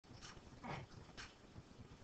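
Near silence, room tone only, with a faint short sound about two-thirds of a second in and a fainter one just after a second.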